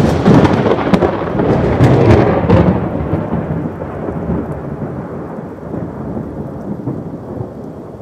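Thunderstorm sound effect: a loud crackling burst of thunder with rain that rumbles on and slowly fades.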